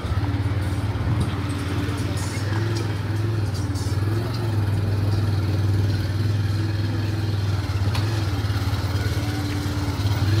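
Motorcycle engine running steadily at low road speed, heard close up from the pillion seat, with a constant low hum and road noise.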